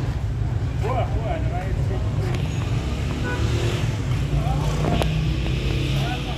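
Busy street ambience: a steady low rumble of traffic, with passers-by talking in snatches and a sharp click about five seconds in.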